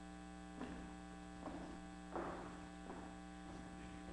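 Steady electrical mains hum, several steady tones at once, with a few faint knocks in the room.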